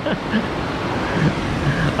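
Steady rushing of whitewater from a river rapid, with a short laugh at the start.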